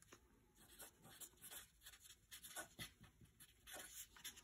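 Felt-tip marker writing a word on paper: faint, short strokes of the tip across the sheet.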